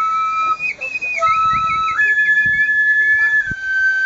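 Two shinobue, Japanese bamboo transverse flutes, playing a melody together: one holds long steady notes while the other plays a higher line with quick ornamented runs, then settles onto a held note.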